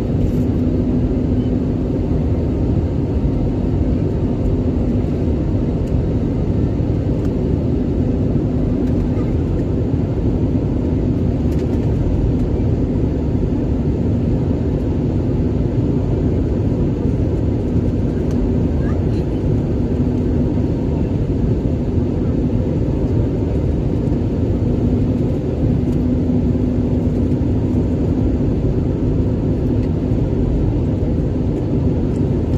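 Steady cabin noise of an airliner in flight: a constant dull rush of engines and airflow with a low steady hum running under it.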